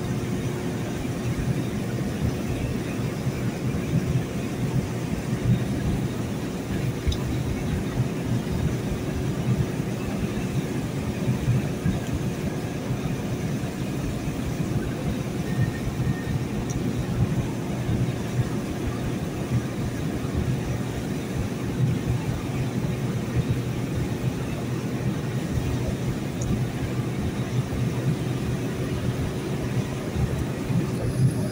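Steady drive noise of a vehicle cruising on a wet highway, heard from inside the cab: an even low rumble of engine and tyres with a faint steady hum.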